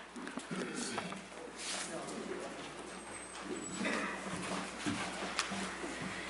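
Handling noise picked up by a lectern microphone: scattered knocks and rustles from books and footsteps at the pulpit, over a faint room hush.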